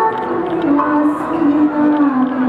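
A woman singing solo in a traditional Paiwan style: a slow melody of long held notes that step gently up and down in pitch.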